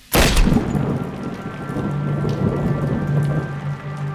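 A loud crack of thunder right at the start, then steady heavy rainfall. A low sustained music drone comes in underneath about halfway through.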